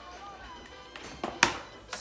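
Chopped onions, green peppers and smoked bacon tipped from a dish into the hot Instant Pot, giving two sharp clatters about a second and a half in and a lighter knock near the end, under faint background music.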